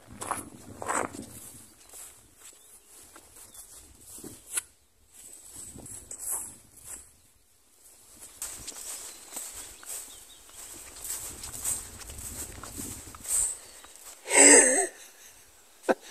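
Footsteps of a person walking at a brisk pace, first crunching on gravel, then on grass. A brief vocal sound comes near the end.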